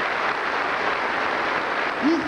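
Large audience applauding, a steady dense clapping.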